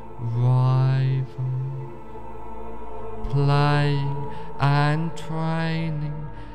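Meditation music: a low voice chanting long, held syllables, five in all, over a steady drone.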